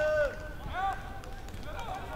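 Players shouting to each other across an outdoor football pitch, heard from a distance: one long call at the start and shorter calls about a second in, none of them clear words.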